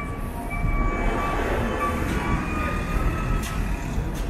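Steady rumbling city street traffic noise, with a few brief high-pitched squeals coming and going.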